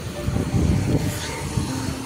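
A motor scooter passing close by on the road, with a low rumble of wind on the microphone that is loudest in the first second.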